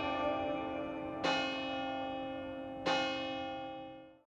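Bells ringing: two struck notes about a second and a half apart sound over a held, ringing chord, then the whole fades out near the end.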